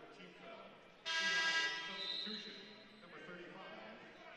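Arena horn sounding once about a second in: a steady buzzing tone that holds for about a second and then fades, over the faint background noise of the gym.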